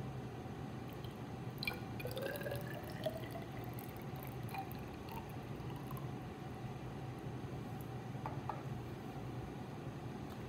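Water poured from a glass beaker into a plastic graduated cylinder, with a rising tone as the cylinder fills about two seconds in, and a few light clinks of glassware.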